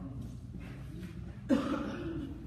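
A single loud cough about one and a half seconds in, over faint talk in the room.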